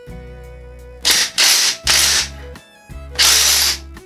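Ryobi cordless impact driver with a welded-on keyless chuck adaptor, run in two short bursts of under a second each while the chuck is held by hand to loosen the jaws and free a stuck drill bit.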